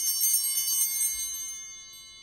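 Altar bells (a small set of hand bells) rung at the epiclesis of the Mass, the moment before the priest calls down the Spirit on the bread and wine. Several high tones ring together with a shimmer early on, then fade away near the end.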